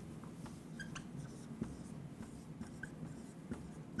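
Marker writing on a whiteboard: faint, short scratchy strokes and small squeaks, over a low steady room hum.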